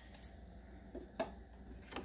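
Faint handling sounds as a rubber vacuum hose is pushed back onto the nipple of an EVAP purge solenoid: a few small clicks, the sharpest about a second in.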